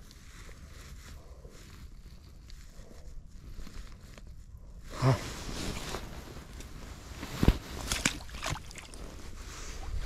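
Low wind rumble on the microphone and rustling of dry reeds and clothing as a chub is released back into the river, with a sharp small splash about seven and a half seconds in and a few lighter ones after.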